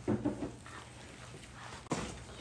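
Quiet room tone with a faint steady low hum, a brief vocal sound at the start, and a single sharp click near the end.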